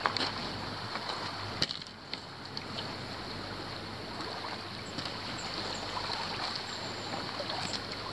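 Small waves lapping steadily at the lake's edge, with a light wash of wind. A single sharp click sounds about one and a half seconds in.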